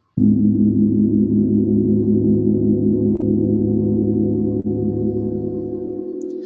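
Recording of a 38-inch symphonic gong ringing: a deep, sustained wash of many steady overtones with a slight regular wavering, slowly fading toward the end.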